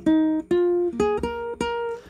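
Guitar picking a melody of single plucked notes, about two a second, each ringing out and fading before the next.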